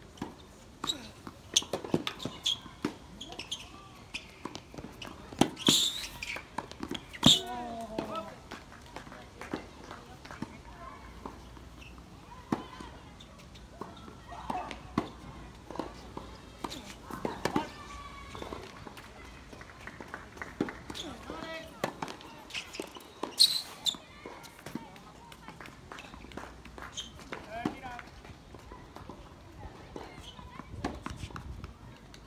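Tennis rally on an outdoor hard court: sharp racket strikes on the ball and ball bounces at irregular intervals, with the players' footsteps. Short bursts of voice come between the shots.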